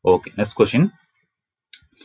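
A voice speaks briefly for the first second, then a pause with a faint short click near the end.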